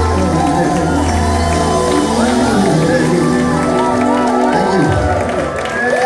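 Live band and a group of singers performing a song together, with held bass notes under several gliding voices, while the audience cheers.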